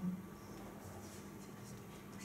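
Quiet room tone: a faint steady hum over low background noise, with the tail of a spoken syllable at the very start.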